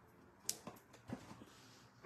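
Quiet handling sounds as a satin ribbon is worked around a paper gift box: one sharp click about half a second in, then a few faint soft knocks.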